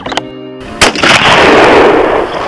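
A single rifle shot just under a second in, its boom echoing and dying away slowly. It comes as held music notes break off.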